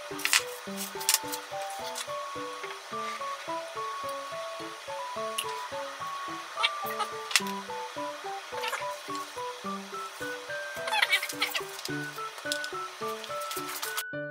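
Background music with a bouncy melody of short, separate notes. Over it come a few sharp clicks and taps of utensils against a glass jar and dishes, the busiest stretch about eleven seconds in.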